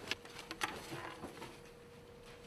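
Quiet room with a faint steady hum and a few soft clicks in the first second.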